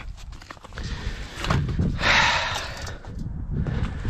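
Boots knocking and scuffing on a trailer's deck and sides, and a rolled flatbed tarp being hauled and dropped onto a snowy trailer deck, with the loudest rough, rustling burst about two seconds in.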